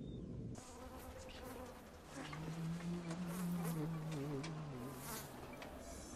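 A fly buzzing: a wavering hum, strongest from about two seconds in to near the end, over a steady hiss.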